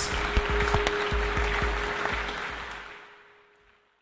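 Audience applause, a dense patter of claps, under a steady held musical tone. The sound fades out over the last second and a half to silence.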